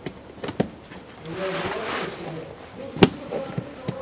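Plastic cabin air filter cover being fitted and closed on its housing: light clicks and a rustling scrape, then one sharp snap about three seconds in.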